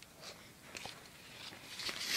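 Faint mouth sounds from a mouth stuffed with marshmallows: a few small wet clicks, then a short, sharp breathy burst near the end as he gags on them.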